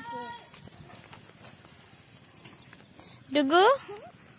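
A young child's short, high-pitched call rising in pitch near the end, after a voice trails off at the start and a stretch of faint background noise.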